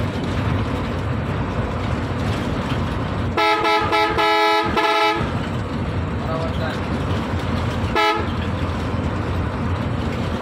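Steady engine and road rumble inside a moving bus. About three and a half seconds in, a loud multi-tone horn sounds a quick run of short toots for nearly two seconds, and it gives one more short toot about eight seconds in.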